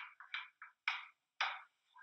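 A wooden spoon crushing canned whole tomatoes against the bottom of a skillet: a quick run of about seven short, irregular strokes, each fading fast.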